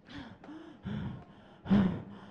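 A woman gasping into a handheld microphone held to her mouth: about four short voiced gasps, the last near the end the loudest.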